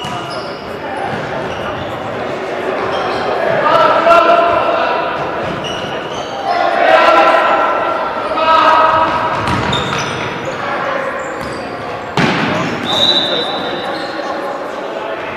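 Indoor futsal play in a sports hall: the ball being kicked and bouncing on the hard court floor, with players shouting, all echoing in the large room. A sharp ball impact comes near the end, followed by a short high tone.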